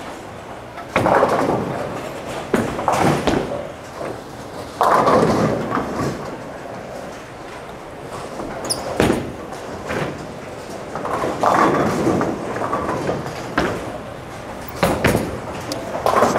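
Bowling alley din: pins crashing and balls rolling on the surrounding lanes, with several loud crashes, two of them starting suddenly about a second in and about five seconds in, and a sharp click near the middle.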